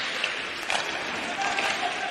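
Steady hiss of live on-ice hockey play, with skates scraping the ice during a scramble in front of the net.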